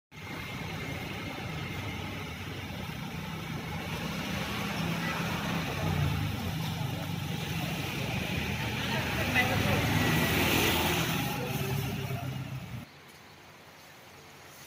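Steady road-traffic noise with indistinct voices mixed in, cutting off abruptly near the end.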